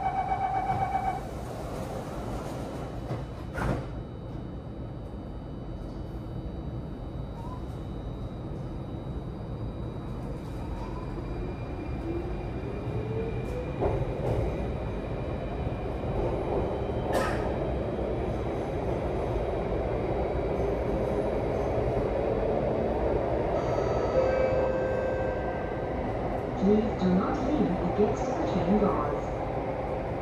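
Singapore MRT Circle Line train heard from inside the carriage, pulling away from the station: a short tone as the doors shut, then a motor whine rising in pitch as it accelerates, building into a steady running rumble in the tunnel, with a couple of sharp clicks along the way.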